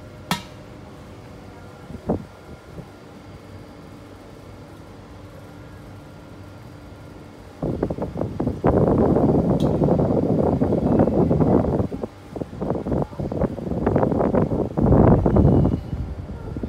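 Two light metallic clinks of a stainless-steel chafing-dish lid near the start, then loud, rough rumbling and rustling noise for most of the second half, broken briefly about three-quarters of the way in.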